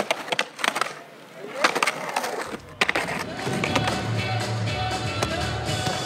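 Skateboard on concrete: the wheels roll and the board slides along a ledge, with several sharp clacks. About two and a half seconds in, the skating cuts off and music with a heavy bass comes in.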